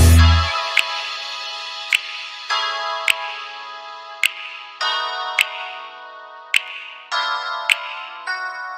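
Instrumental breakdown of an 80s-style synthpop beat: the bass and full mix drop out about half a second in, leaving sustained synthesizer chords that re-enter every couple of seconds. A sharp click sounds about once a second.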